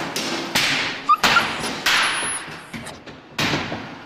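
Hammer blows on red-hot iron at a forge: about five heavy strikes, four in quick succession roughly two-thirds of a second apart and one more near the end, each trailing off.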